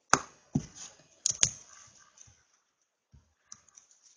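A few sharp clicks of a computer keyboard in the first second and a half, two of them close together, then only a couple of faint ticks.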